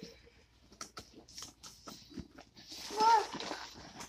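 Cardboard box and packing tape being handled and pulled, a run of small crackles and ticks, then about three seconds in a child's short drawn-out vocal cry that rises and falls.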